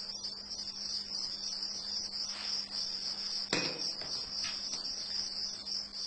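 Crickets chirping in a steady, high-pitched trill, with a sharp click about three and a half seconds in.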